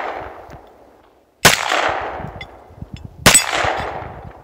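Two gunshots about two seconds apart, fired at hanging steel plate targets. Each is a sharp crack followed by a long echo that fades away. The echo of an earlier shot dies out at the start.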